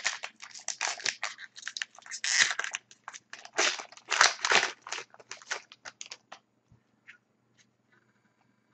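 Trading-card pack wrapper being torn open and crinkled by hand: a quick run of crackles for about six seconds that then stops.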